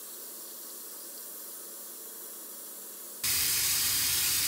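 A steady, faint hiss, then a bathroom sink tap running with a louder rush of water that starts abruptly near the end.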